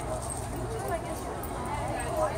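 Indistinct voices of people talking in the background over the general murmur of an outdoor crowd.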